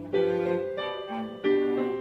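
Cello and piano playing a Bourrée together: sustained bowed cello notes over piano accompaniment, moving from note to note.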